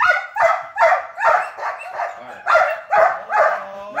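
Belgian Malinois barking on the "bark" command: a steady run of short, sharp barks, about two or three a second.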